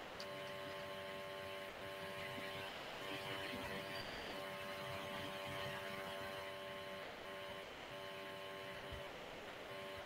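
Steady electrical hum made of several tones over a low hiss, dropping out briefly several times.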